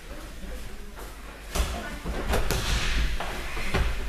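A judoka thrown onto the tatami: a sharp thud of the body hitting the mat about one and a half seconds in, followed by further thumps and the scuffle of jackets and feet on the mat.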